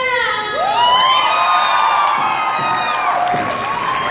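A cappella vocal group, mostly women, singing long held notes: about half a second in a high voice slides up and holds until about three seconds in. An audience is cheering and whooping along.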